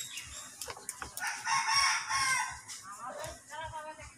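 A rooster crowing once, a long call of about a second and a half, followed by a few shorter calls near the end.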